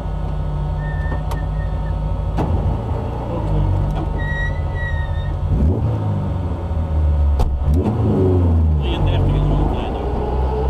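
Rally car engine heard from inside the car, driving at low speed with the revs climbing twice through gear changes.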